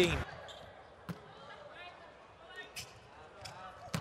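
Quiet indoor volleyball arena with low hall noise, broken by sharp volleyball impacts: one about a second in and a louder one at the end.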